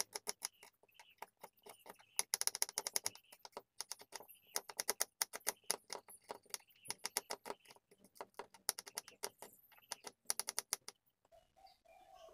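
Kitchen knife slicing shallots on a wooden chopping board: quick runs of sharp taps, several a second, with short pauses between runs. The taps stop about a second before the end.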